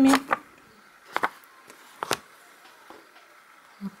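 Embroidery needle and thread pulled through plastic canvas while backstitching: two short strokes about a second apart, with a few fainter ticks.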